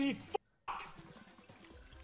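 The end of a man's excited shout, then a brief dropout to dead silence, followed by faint online slot-machine game sounds with small watery, dripping ticks.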